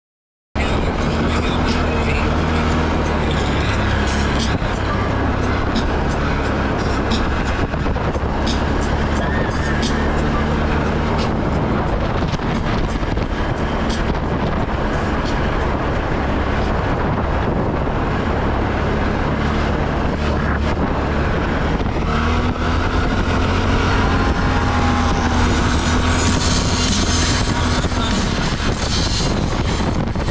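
Can-Am Renegade ATV engine running under way, starting abruptly about half a second in. The engine note rises and falls with the throttle, over noise and small rattles from the trail.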